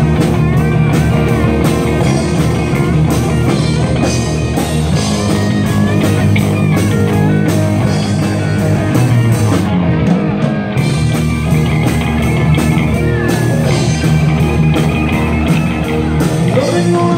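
Live rock band playing an instrumental passage: electric guitars over bass and drum kit, with a lead guitar line that bends in pitch.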